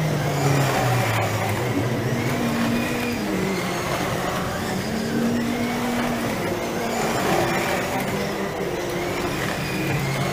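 1/24 scale slot cars racing around the track, their small electric motors whining up and down in pitch as they speed along the straights and slow for the corners.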